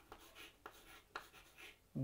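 Chalk faintly scratching on a chalkboard as a short word is written, with a couple of sharper taps of the chalk against the board.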